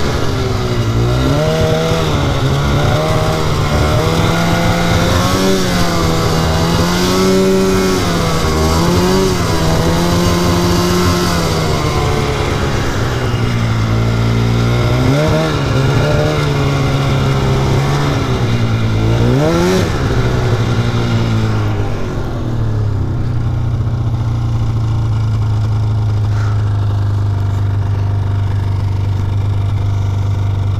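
2004 Polaris RMK 800 snowmobile's two-stroke twin running under way, its pitch rising and falling with the throttle. About two-thirds of the way through, the revs drop and it settles into a steady, lower note.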